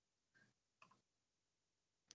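Near silence on the call line, with two very faint short sounds about half a second apart.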